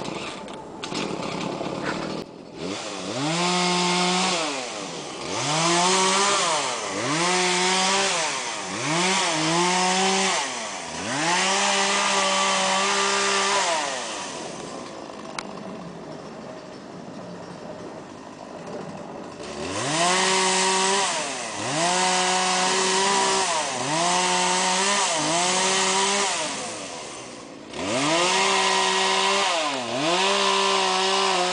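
Two-stroke chainsaw cutting up fallen pepper-tree limbs, revved up again and again for a second or two at a time and dropping back to a quieter idle between cuts. Midway it idles for about five seconds.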